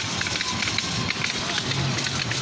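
Crowd ambience: a steady wash of noise with indistinct voices of people milling about, and no single sound standing out.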